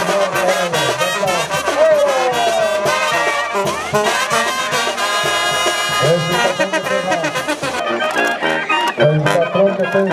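Brass band music with trumpets and trombones playing a melody over a low, moving bass line.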